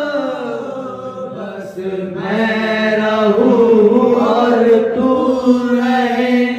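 A group of men singing a Sufi kalam together through microphones, drawing out long held notes in a chant-like melody, with a brief dip about two seconds in before the next phrase rises.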